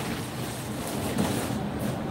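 Steady street background noise: an even, rushing sound like passing traffic.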